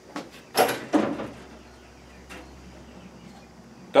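Cleaning tools being handled as a toilet brush is put aside and a metal dustpan picked up: two short clattering sounds about half a second and a second in, then quiet room tone with a faint click.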